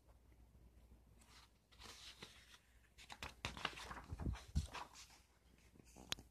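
Paper rustling and light handling clicks as a page of a book is turned, close to the microphone, with two soft knocks about four seconds in.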